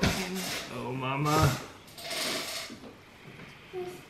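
Quiet, unclear talk between two people, followed about two seconds in by a brief soft rustling rub.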